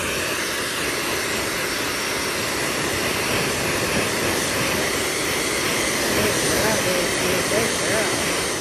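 Handheld hair dryer blowing steadily over a wet dog's fur.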